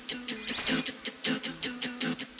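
Upbeat background music with a quick, even beat, and a rising sweep sound effect about half a second in.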